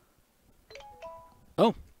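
Nexus 6P smartphone giving a short electronic chime of a few stepped notes, a sign that the phone has powered on even though its broken LCD shows nothing.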